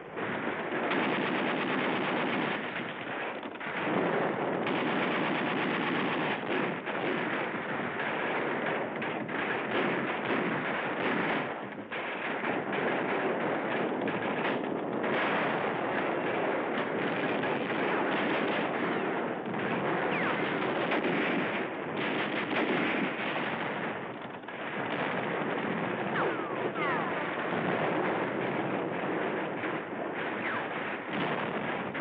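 Sustained heavy machine-gun and small-arms fire, a dense unbroken rattle of shots that eases briefly about three and a half seconds in, about twelve seconds in and about twenty-four seconds in. It comes through a narrow-band, dull-sounding old film soundtrack.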